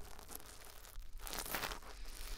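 A wet spoolie brush rubbing inside the silicone ear of a 3Dio binaural microphone, heard close up as noisy scratching strokes. It dips about a second in, and the loudest stroke comes about a second and a half in.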